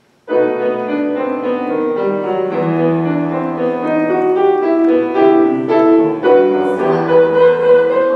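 Piano playing a short passage of music, starting suddenly just after the start and fading out at the end.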